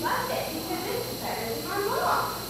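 People's voices in a large room, with several short, high vocal sounds that rise in pitch.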